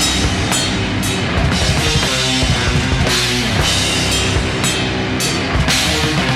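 Black metal demo recording: distorted guitars over a busy drum kit, with cymbal crashes struck several times.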